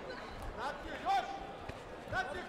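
Voices shouting across a sports hall during a taekwondo bout, the loudest shout about a second in, with a light thud near the end from the fighters on the mat.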